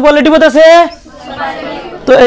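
Classroom speech: voices speaking for about a second, then a quieter murmur of voices.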